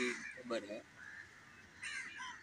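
Crows cawing outdoors: a few short caws in the first second and again near the end, with a quiet gap between.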